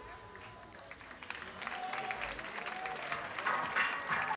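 Audience applauding and cheering after the song ends: quiet at first, swelling from about a second and a half in.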